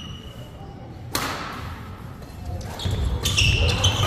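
Badminton racket striking the shuttlecock once about a second in, a sharp crack with a short echo in a large hall. Near the end, court shoes squeak and feet thud on the wooden floor as the players move into the rally.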